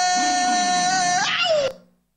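A voice holding one long, high wailing note that bends down in pitch and stops about one and a half seconds in. It is cut off into complete silence.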